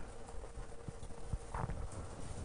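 Quiet handling sounds at a wooden pulpit as Bible pages are turned: a few light knocks and a brief paper rustle about one and a half seconds in.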